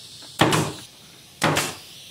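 Pneumatic nail gun firing twice, about a second apart, driving nails through a birch plywood top into its legs. Each shot is a sharp bang with a short fading tail.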